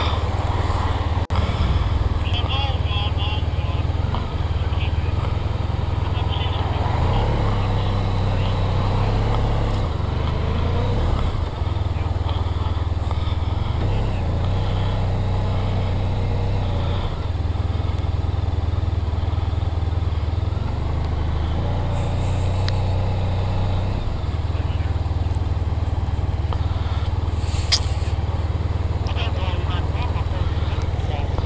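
Motorcycle engine and wind noise picked up by a bike-mounted camera while riding at town speed: a steady low rumble.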